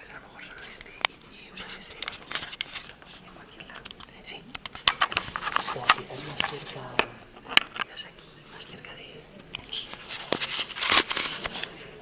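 Rustling and sharp clicks of a clip-on microphone being handled and fastened to clothing, loudest about eleven seconds in.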